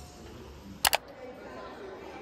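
Camera shutter sound: two sharp clicks about a tenth of a second apart, much louder than the low murmur of the background.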